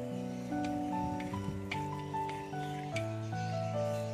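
Background music: a slow melody of held notes over sustained chords.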